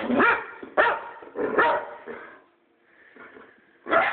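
Boxer dog barking at close range: three barks in the first two seconds, a pause, then another bark near the end.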